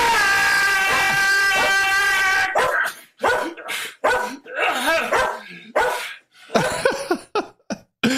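A dog barking and yipping in short bursts, after one long held cry at the start.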